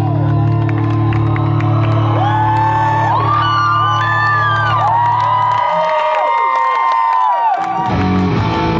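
Live rock band holding one sustained chord while the concert crowd whoops and yells in long rising-and-falling cries. About five and a half seconds in, the band's low chord cuts off, leaving the crowd's whoops and cheers. The band comes crashing back in just at the end.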